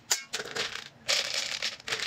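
Dry dog kibble poured from a plastic container into a plastic slow-feeder bowl: a sharp clatter just after the start, then rattling pieces, with a longer, denser pour from about a second in.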